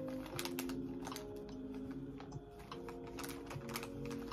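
Small clear plastic bag crinkling and crackling in the hands as it is opened, a quick irregular run of sharp clicks, over soft background music.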